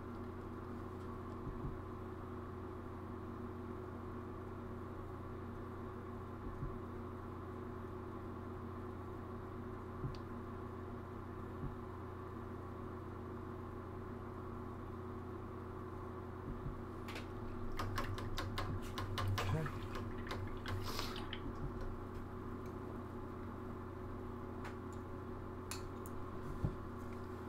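Steady low electrical hum, with a few faint clicks and rustles about two-thirds of the way through.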